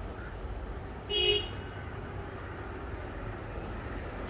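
A short, high vehicle-horn toot about a second in, over a steady low rumble.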